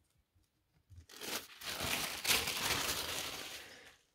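Thin protective packing sheet crinkling and rustling as it is pulled off a laptop's keyboard. It starts about a second in and lasts nearly three seconds.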